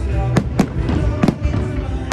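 Aerial firework shells bursting: three sharp bangs in the first second and a half, over background music.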